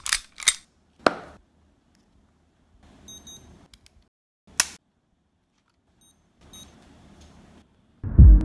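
Small plastic clicks from an Accu-Chek lancing pen being handled and set, with a sharp click about halfway through. A blood glucose meter gives a quick pair of short high beeps at about three seconds, and again near the end.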